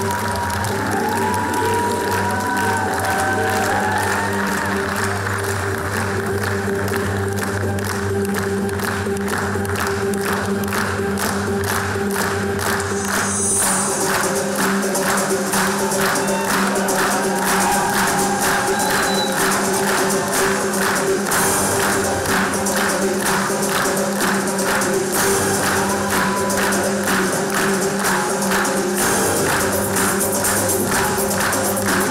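Dance music with held low drone tones and a wavering melody over a steady percussion beat that grows clearer after the first several seconds.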